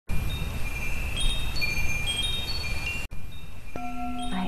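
Wind chimes ringing, many high overlapping tones struck one after another over a low rumble. The sound cuts out briefly about three seconds in, and a low steady tone enters near the end.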